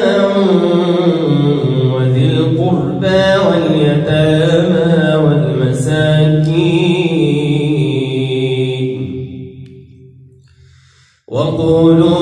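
A man's solo voice reciting the Quran in the melodic tajwid style, drawing out long ornamented notes that glide up and down in pitch. It trails away about nine seconds in, falls silent briefly for a breath, and resumes just before the end.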